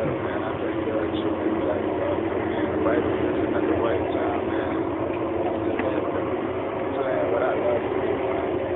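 A man's voice answering faintly over a telephone line, thin and muffled, under a steady hum of line and background noise.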